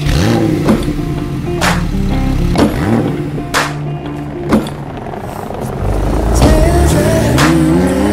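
A Porsche 991.2 Targa 4 GTS's twin-turbo flat-six engine revving and pulling away, its pitch climbing near the end, mixed with background music that has a steady beat of about one strike a second.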